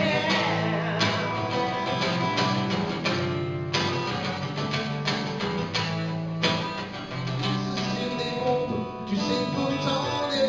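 Live acoustic music: two acoustic guitars strumming chords over held bass notes.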